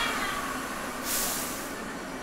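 Red Line subway train standing at the platform: a short falling squeal at the start, then a sharp burst of air hissing from the train about a second in, over the steady hum of the station.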